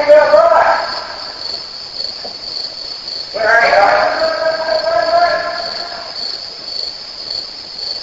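Crickets chirping in a steady high trill throughout. Over it, a drunken, wavering voice trails off in the first second. A long drawn-out wail of about two and a half seconds starts about three seconds in.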